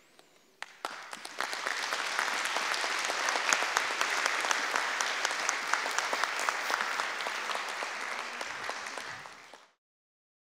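Audience applauding: the clapping starts about a second in, holds steady, then cuts off abruptly near the end.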